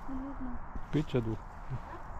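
A brief low two-note hum, the second note slightly lower, then a woman says a few short words.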